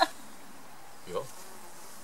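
A flying insect buzzing faintly, with a brief voice sound about a second in.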